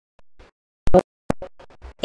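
A woman's amplified speech chopped into short, garbled fragments by audio dropouts, with abrupt gaps of dead silence between the bits. The loudest fragment comes about a second in.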